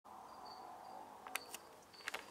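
Faint steady hum with a few sharp clicks about one and a half seconds in.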